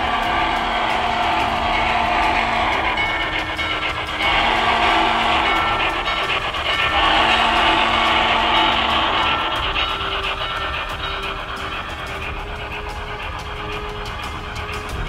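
Recorded Norfolk & Western steam whistle played by the ProtoSound 3.0 sound system of an MTH HO-scale J Class model: three long whistle blasts over roughly the first ten seconds, with background music underneath.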